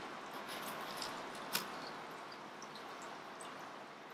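Faint crinkling and rustling of a silver bubble-foil insulated shipping bag being handled inside a styrofoam box, with a few small ticks and one sharp click about one and a half seconds in.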